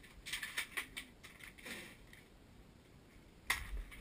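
Plastic clicking and clacking of toy Nerf dart blasters being loaded and primed, a quick run of clicks in the first two seconds. Near the end comes a single sharp snap as a blaster is fired.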